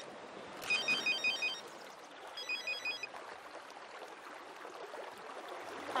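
Motorola flip phone ringing: short bursts of rapid electronic beeps, one burst about every second and a half, the last of them dying away about three seconds in.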